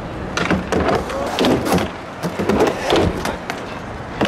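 Skateboards in a concrete bowl: wheels rolling with a string of sharp clacks and knocks from boards hitting the concrete and a wooden obstacle. People's voices call out in the background.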